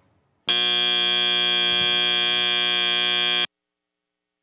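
FIRST Robotics Competition end-of-match buzzer: one steady buzzing tone of about three seconds that starts about half a second in and cuts off suddenly. It signals that the match timer has run out.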